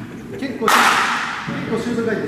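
One sharp smack about two-thirds of a second in, ringing on in the large indoor hall, with a man's voice near the end.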